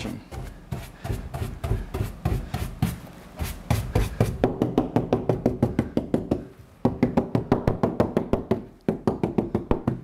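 A stiff mounting brush tapped rapidly, about six knocks a second, against the pasted margin of a wet-mounted rice paper painting on a drying board. The tapping stops briefly about two-thirds of the way through. This is done to press the pasted rim so that it sticks to the board.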